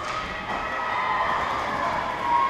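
Echoing indoor ice rink: distant voices and shouts from players and spectators during a hockey game.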